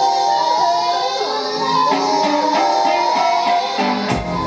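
Live music: a ukulele being strummed and plucked under a woman's high, bending singing, with no bass or drums until the drums come back in at the very end.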